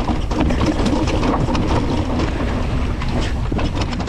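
Niner WFO 9 RDO carbon full-suspension 29er mountain bike ridden fast over a rocky dirt trail, heard from a bike-mounted camera: a steady rumble of tyres and wind on the microphone, with frequent short clacks and rattles from the bike over rocks.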